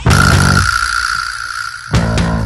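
Rock music: a guitar chord struck at the start and left to ring out, with a high steady tone held over it before the next chord comes in at the end.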